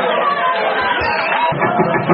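Live band in a club, thinned out to a break in which voices and chatter are heard, then the full band with bass and drums comes back in about one and a half seconds in.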